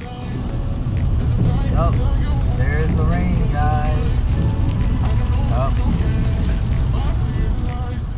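Low road and engine rumble inside a moving car's cabin, fading in at the start and out near the end, with music and a few short snatches of voice or singing over it.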